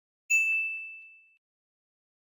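A single bright bell-like ding, a chime effect that strikes about a quarter second in and rings down to nothing over about a second.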